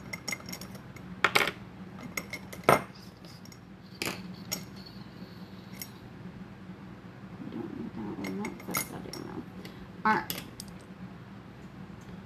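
Makeup brushes and other small hard items being rummaged through, picked up and set down: a string of sharp clicks and clatters, loudest about one and a half and three seconds in, with more near the end.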